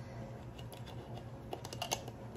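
Small clicks and scrapes of a metal mason jar lid against the glass jar as it is pushed and twisted, a few at first and a quick cluster near the end. The lid won't go back on because the match-striker strips inside it overhang too much.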